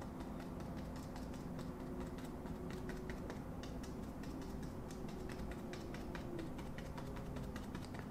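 Small paintbrush dabbing acrylic paint onto a canvas in quick, light, irregular taps, over a faint steady hum.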